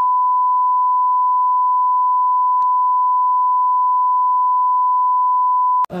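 Steady 1 kHz test-signal tone, the reference beep that goes with television colour bars. It is one pure, unbroken beep that cuts off suddenly just before the end.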